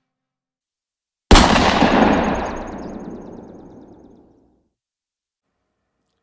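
Intro sound effect: a single loud boom hits about a second in and dies away slowly over about three seconds, with a fine rattle in its tail.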